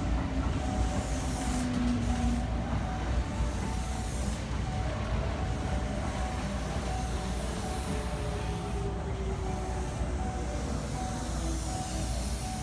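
Kintetsu 8600-series and 1233-series coupled electric train running slowly past the platform as it brakes on arrival: a steady rolling rumble with faint whining tones, some falling slowly in pitch.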